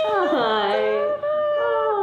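Two women's overlapping, drawn-out high-pitched squeals of greeting as they hug, wordless and gliding in pitch, with a short break just after a second in.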